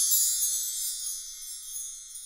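Shimmering, high chime sound effect of an animated logo sting, ringing and slowly fading away.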